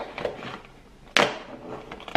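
Cardboard Advent calendar door being pressed in with the fingers: light scraping and handling, then one sharp crack a little over a second in.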